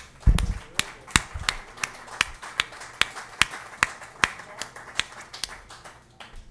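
Small audience applauding, with individual claps standing out and a low thump just after it begins; the applause dies away near the end.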